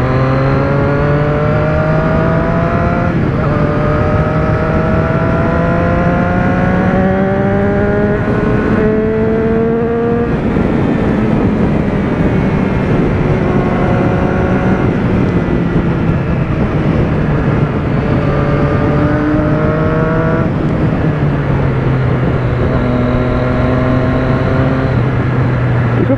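Motorcycle engine under way, its pitch climbing in long pulls broken by gear changes about three, seven and ten seconds in, then holding a steadier cruising pitch with small rises and falls, over rushing wind and road noise.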